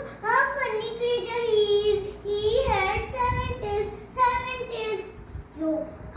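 A young girl singing solo in a child's voice, with long held notes that glide up and down.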